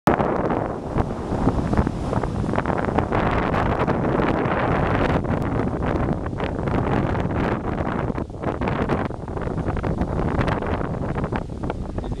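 Wind buffeting the microphone: a loud, continuous rumble that rises and falls unevenly in gusts.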